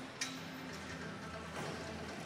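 Faint background music in a large arena, with a small click about a fifth of a second in.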